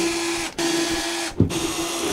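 Cordless drill-driver motor running steadily as it unscrews the screws of a worn concealed cabinet hinge, with a short stop about half a second in and a sharp click near the middle.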